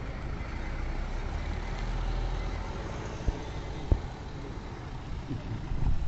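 Steady low rumble of road traffic, a car passing close by, with two short knocks a little past the middle.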